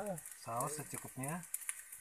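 A person's voice in two short utterances, the words unclear, over a faint high hiss of frying in the wok, with a few light clicks after.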